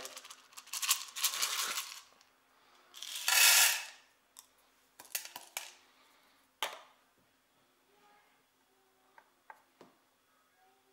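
Roasted coffee beans rattling as they are tipped out of a plastic cup, with a second, louder pour about three seconds in. Then a few separate light clicks as the plastic cup is handled and set down on a digital scale.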